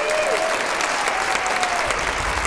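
Audience applauding after a song ends, a steady crackle of clapping with a few cheering voices rising and falling over it in the first half.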